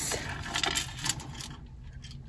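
Jewelry pieces clinking and rattling against each other and the glass case as a hand picks through them: a scattering of light, sharp clicks.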